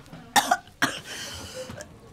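A woman coughing at the stench of a rotten sausage from a mouldy fridge: two short coughs, then a longer breathy cough about a second in.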